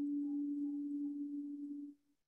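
A small meditation singing bowl ringing after being struck, a steady low tone with a higher overtone that wavers in and out, cut off abruptly near the end.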